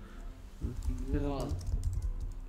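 Typing on a computer keyboard: a run of key clicks, thickest near the end. A voice speaks briefly in the middle.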